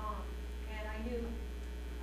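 Steady low electrical mains hum on the sound system, with a woman speaking faintly off-microphone in two short stretches.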